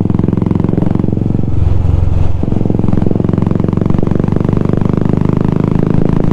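Royal Enfield Classic 350 Signals single-cylinder engine running steadily at road speed, heard from the rider's seat through a changed exhaust that makes it a little louder than stock. The note changes briefly about two seconds in, then settles back.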